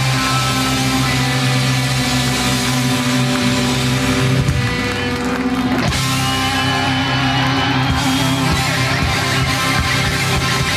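Hard rock band playing live, with electric guitars, keyboard and drums holding sustained chords.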